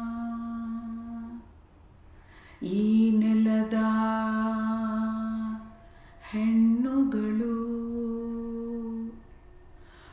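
A woman singing a Kannada song unaccompanied, in long held notes: three drawn-out phrases with short breaths between them.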